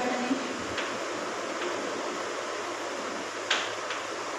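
Steady background hiss of a small room, with a few short scrapes of chalk on a blackboard, the strongest near the end.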